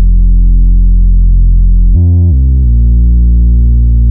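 The solo bass line of a hip-hop beat: a deep synth bass holding long low notes, loud. A brief higher note comes in about two seconds in and steps back down.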